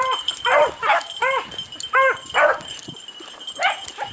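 Beagles baying on a rabbit's scent trail: a quick run of short, arched bawls, then a pause and one more near the end.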